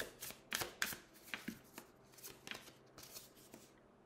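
A deck of oracle cards being shuffled by hand: quick papery slaps of cards against cards, about three a second, thinning out and stopping shortly before the end.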